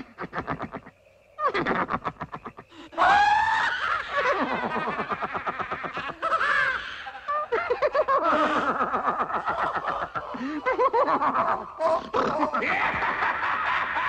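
A cartoon man and horse laughing hysterically together. It starts with quick, choppy chuckles, then about three seconds in it breaks into louder, higher laughter with swooping rises and falls in pitch.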